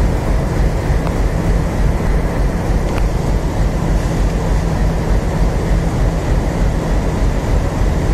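Approaching passenger train's locomotive running with a steady low rumble and hum.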